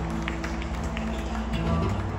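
Live acoustic string duo playing the opening of a folk song: plucked notes over held, changing low chords.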